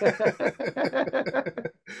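Men laughing heartily in a rapid run of short voiced bursts, breaking off briefly near the end before another laugh starts.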